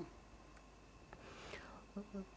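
Near silence in a pause in a man's speech: faint room tone with a soft breath about halfway through.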